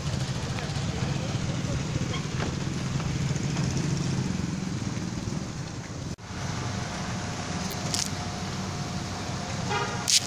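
Street traffic noise: a steady rumble of passing motor vehicles, with a short horn honk just before the end.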